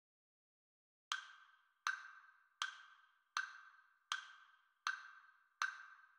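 Metronome click with a wood-block sound starting about a second in and ticking evenly at 80 beats a minute, seven short, quickly fading clicks: a count-in at the piece's Andante tempo.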